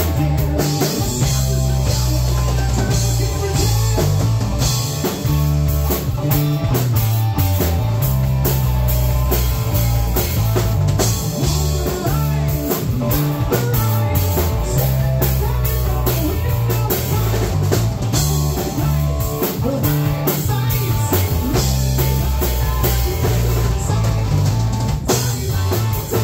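Live rock band playing an instrumental passage: electric guitar, electric bass and drum kit together, with a strong, steady beat and no singing.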